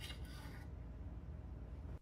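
Quiet room tone: a faint steady low hum, with a brief soft hiss in the first half-second.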